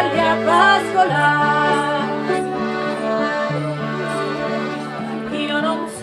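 Piano accordion playing an instrumental folk passage, a melody over sustained bass notes that change every second or so, with acoustic guitar accompaniment.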